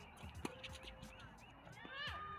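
Tennis racket striking the ball once, a sharp pop about half a second in, during a doubles rally on a hard court. A short falling squeal comes near the end.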